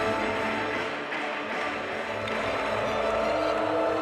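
Music of long, held chords with no clear beat, dipping slightly in level about a second in.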